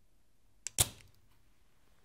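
Spring-loaded solder sucker (desoldering pump) fired on a through-hole joint: a light click of the release button, then, a little under a second in, one sharp snap as the piston shoots up and sucks the molten solder out of the hole.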